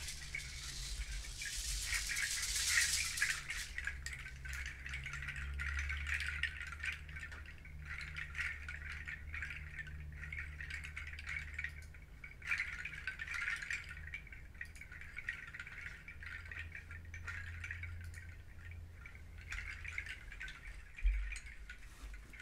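Hand-held bundle rattle of dried pods shaken continuously: a dense clattering that swells and fades, brightest in the first few seconds. A low hum runs underneath, and there is a short thump about a second before the end.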